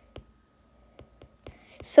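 Faint, irregular clicks of a stylus tapping on a tablet screen while words are handwritten, a few a second. A voice starts speaking right at the end.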